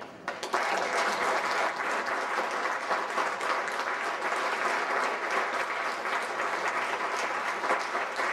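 Audience applauding: dense, steady clapping that starts about half a second in, at the end of a choir piece.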